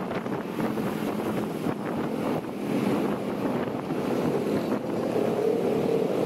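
Wind rushing over the microphone of a moving scooter, with the low steady hum of the Honda ADV 160's single-cylinder engine underneath, at a moderate cruising speed of around 40 km/h.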